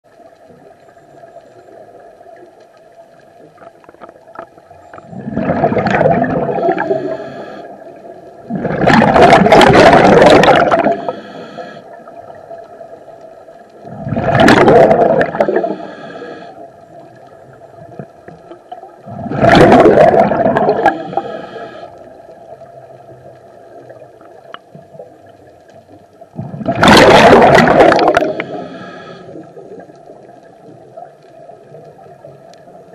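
Scuba diver breathing underwater through a regulator: five loud bubbly rushes of exhaled air, each about two seconds long, roughly every five seconds, with a faint steady hum between breaths.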